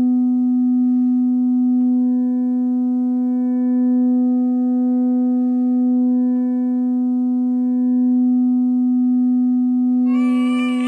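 A steady, sustained drone in the film's score: one low held pitch with a row of overtones above it, swelling and easing slightly in loudness but never changing pitch.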